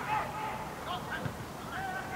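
Distant voices shouting short calls across an open football ground, several calls overlapping.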